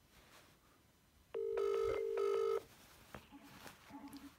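Telephone ringing tone from a phone on speakerphone while an outgoing call connects: one double burst of a steady low tone, two bursts with a short gap, about a second in. Faint taps follow.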